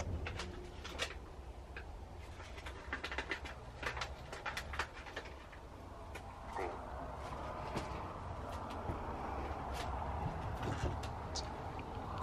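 Necrophonic ghost-box app playing through a tablet's speaker: short, choppy fragments from its sound bank that come and go at random over a steady low hum. A faint hiss fills in from about halfway through.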